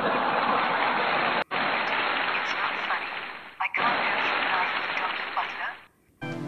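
Loud, continuous hearty laughter, cut off sharply twice, about a second and a half in and again near the four-second mark, then resuming each time.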